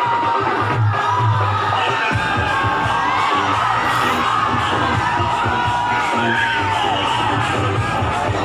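Loud music with a strong bass, played over a crowd cheering and children shouting.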